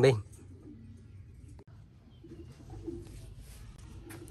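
Faint bird calls in the background over low ambient noise, with no engine running.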